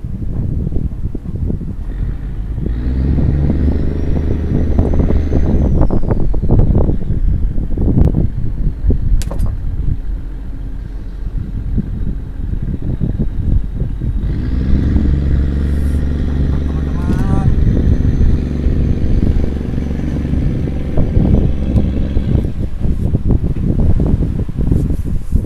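An engine running in two long spells, one in the first half and one in the second, each swelling up and fading away with a faint high whine that rises and falls; a couple of sharp knocks come between the spells.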